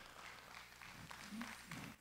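Faint congregation response heard from a distance through the preacher's microphone: light scattered applause with a few indistinct voices.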